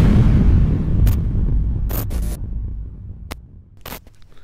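Intro logo sound effect: a sudden deep boom whose rumble fades over about three seconds, with a few short sharp clicks along the way.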